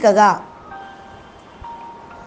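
A man's voice ends a phrase at the start, then a pause filled by faint steady chime-like tones, a few held notes changing pitch once about a second and a half in.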